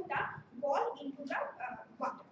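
A woman speaking in short phrases that the speech recogniser did not transcribe.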